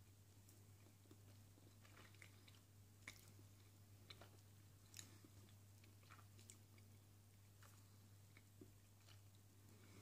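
Faint chewing of a bite of Caramello Koala, milk chocolate with a caramel centre: soft, scattered mouth clicks and smacks over a low steady hum.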